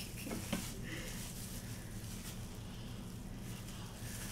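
Quiet room tone with a steady low hum, under faint soft tapping and handling of dough and utensils on a wooden board, with one small click in the first second.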